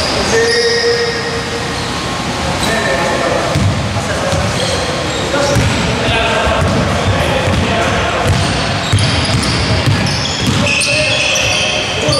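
Basketball bouncing on a hardwood gym floor as it is dribbled upcourt, with short high squeaks from sneakers and players' voices echoing in the hall.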